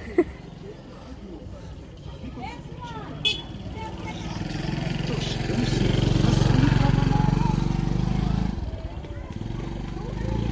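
A motor vehicle's engine hums low, growing louder to a peak midway and then dropping off sharply near the end, with faint voices in the background. A sharp knock sounds just after the start, and a smaller click about three seconds in.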